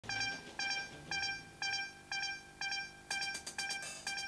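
Short electronic synth beeps, each one pitched tone that fades quickly, repeating about twice a second; about three seconds in they come twice as fast, counting down to the start of the music.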